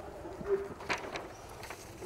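Faint hesitant humming murmur from a man's voice, followed by a few soft clicks.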